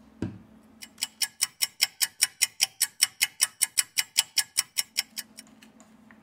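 A ticking clock sound effect, fast and perfectly even at about five ticks a second, marking time passing while the alcohol softens the battery adhesive. A short low thump comes just before the ticking starts.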